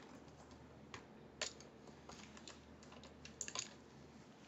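Faint, scattered clicks and taps of small makeup items being handled and moved about in a search for an eyeliner, ending in a quick cluster of clicks.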